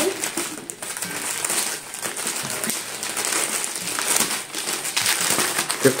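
Thin plastic mailer bags and wrapping crinkling and crackling as they are handled and unwrapped by hand, a busy run of small sharp rustles.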